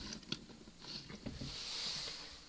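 A few faint, scattered clicks and taps of a plastic Transformers action figure being handled and set down on a wooden table, with a soft hiss rising near the end.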